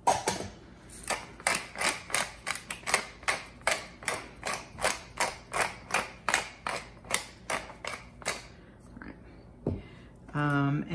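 Wooden pepper mill being twisted to grind pepper, a short crunching click with each turn, about three or four a second, stopping a little before the end.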